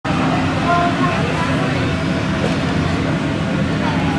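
Indoor aquarium hall ambience: a steady low rumble with indistinct voices of visitors chattering in the background.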